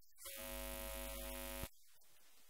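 A steady, buzzy electronic tone with a full low end, starting about a quarter second in, held for about a second and a half and cutting off suddenly.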